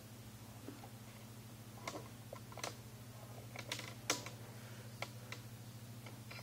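Irregular light clicks and taps, loudest about four seconds in, over a steady low hum.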